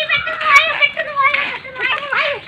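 Children's voices chattering and calling out to each other, high-pitched and continuous.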